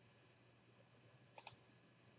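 A computer mouse button clicked, heard as two sharp clicks close together about one and a half seconds in.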